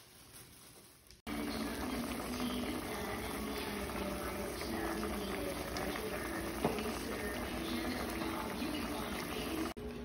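A pot of radish, tomato and onion in water simmering on a gas stove: a steady bubbling hiss that starts abruptly about a second in.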